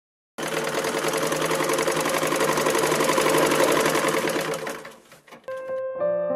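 A fast, steady mechanical clatter with an underlying hum, like a small machine running at speed, which fades away near the end. Just before the end a sustained piano note begins.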